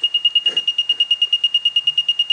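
Buzzer of a homemade continuity tester sounding across the winding of a 220 V synchronous motor: a high, steady-pitched beep pulsing rapidly, about a dozen times a second. It signals continuity, so the motor's winding is unbroken.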